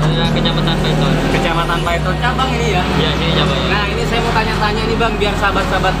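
Voices talking over background music with a steady low bass that changes note every couple of seconds.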